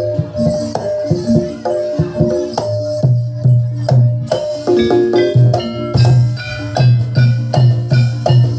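Live Javanese barongan accompaniment music: low drum strokes beating about twice a second under ringing tuned percussion, with higher ringing notes joining about halfway through.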